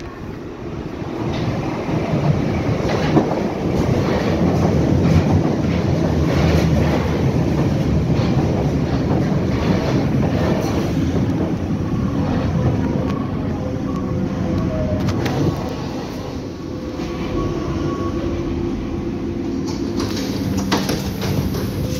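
A Berlin U-Bahn train pulls into an underground station. The noise of its wheels rumbling and clattering on the track builds over the first couple of seconds and stays loud as the cars run past. It eases near the end as the train brakes, with thin squealing tones before it stops.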